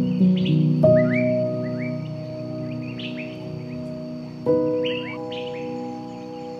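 Slow, soft piano chords ring out, with a new chord struck about a second in and another about four and a half seconds in, each fading slowly. Birds chirp over them in short upward-sweeping notes throughout.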